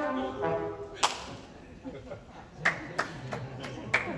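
Sustained trombone notes ring out and die away in the first half second, followed by a low murmur of voices with a handful of sharp, scattered clicks, the loudest about a second in and several more near the end.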